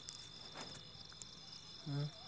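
Crickets chirping steadily and faintly in a quiet night-time background, a continuous high, finely pulsing trill. A short voice sound comes right at the end.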